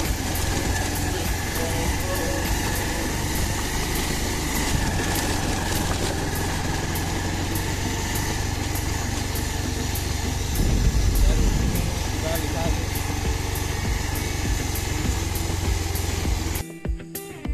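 Motorcycle running as it is ridden slowly over a rough gravel and broken-concrete lane, with a heavy low rumble throughout and a louder surge of rumble about eleven seconds in.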